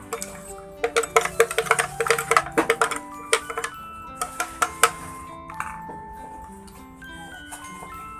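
Metal spoon clicking and scraping against a plastic strainer as blended jamu is pressed through it: a dense, irregular run of clicks in the first half, thinning out after about five seconds. Light background music plays under it.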